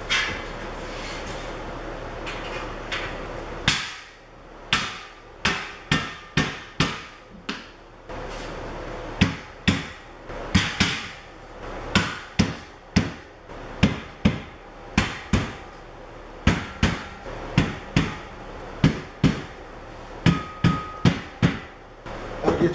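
Rubber mallet knocking the ends of a steel shelf-rack beam down into the slots of the corner uprights. The knocks come in runs of about one to two a second, starting about four seconds in.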